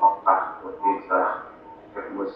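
A man's voice speaking in short phrases over a compressed Skype video call.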